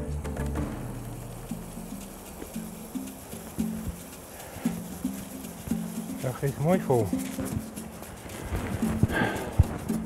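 Background music with footsteps on dry sandy ground and grass, coming at an uneven pace.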